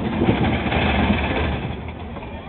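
Roller coaster cars rumbling along the track, growing quieter about a second and a half in.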